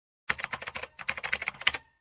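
Typing sound effect: a quick run of key clicks, about eight a second for about a second and a half, with one louder click near the end.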